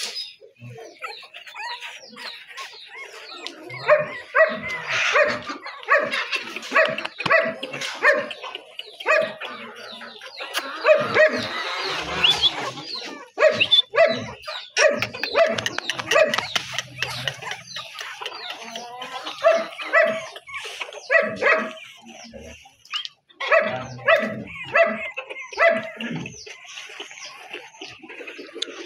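Puppies yapping in short, high-pitched barks, repeated in runs of several with brief pauses between runs.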